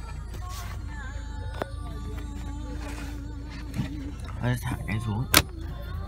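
Inside a car with its engine idling, a low steady drone, with an electric window motor running with a whine for about two seconds mid-way. A sharp click comes near the end.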